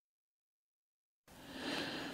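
Dead digital silence for over a second, then a faint soft hiss of background noise near the end.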